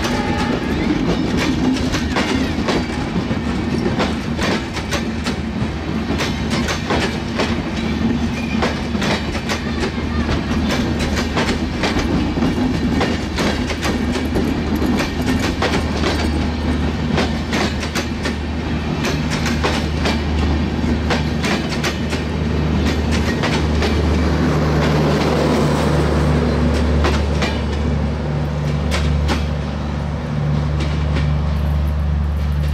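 Passenger coaches of the Sundarban Express intercity train rolling past close by at speed: a rapid, irregular clatter of wheels over rail joints over a continuous loud rumble. A steady low drone grows stronger in the last third.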